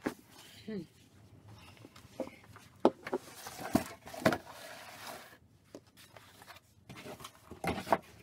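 Cardboard boxes being handled and set down on a hard floor: a run of sharp knocks and scuffs, loudest a few seconds in, with a few more knocks near the end.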